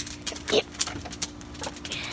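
Campfire crackling, with irregular sharp pops a few times a second.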